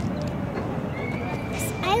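Steady outdoor background noise with a faint, steady high tone in the second half, and a voice starting right at the end.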